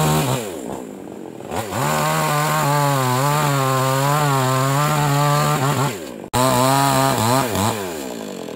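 Yamamax Pro mini chainsaw's small two-stroke engine idling, then revved up to full throttle about a second and a half in and held there as it cuts into a log, the pitch wavering under load. It drops back near six seconds, breaks off abruptly for an instant, revs high again and falls off near the end.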